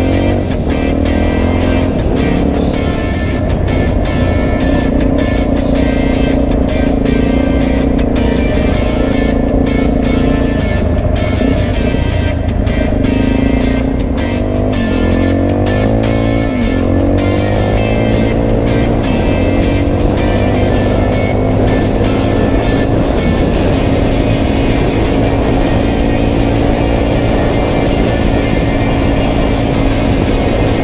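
Suzuki DRZ400E's single-cylinder four-stroke engine running under way on a gravel road, its revs rising and falling about halfway through, with music playing over it.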